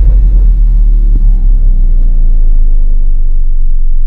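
Loud, deep steady rumble of a cinematic logo-reveal sound effect, with faint sustained tones above it.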